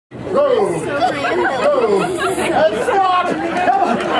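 Several people talking at once: a crowd chattering around a street juggling act.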